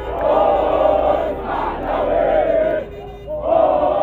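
A crowd of football supporters chanting together in unison, loud, in sung phrases, with a short pause about three seconds in before the chant starts up again.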